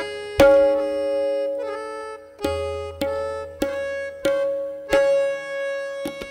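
Tabla solo in teentaal: spaced, sparse strokes roughly every half second to second, including a deep ringing bass stroke on the bayan about two and a half seconds in. Underneath, a harmonium holds the repeating lehra (nagma) melody.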